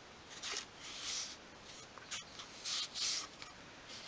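Fingertips pressing and rubbing along a thin obeche wood top glued onto a miniature workbench frame: about four short, soft scratchy rubs and a small click a little past halfway.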